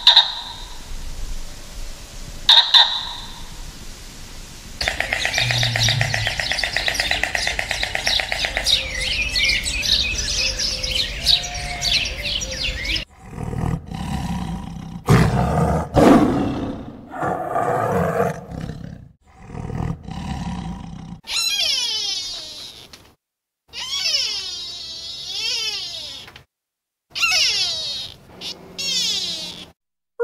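A string of different animal calls: two short sharp calls at first, then a long rapid chattering call, then a series of loud, low tiger roars around the middle, and wavering high calls that rise and fall near the end.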